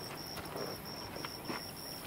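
An insect, such as a cricket, chirping steadily in a high-pitched pulsed rhythm of about three chirps a second, with a faint click or two.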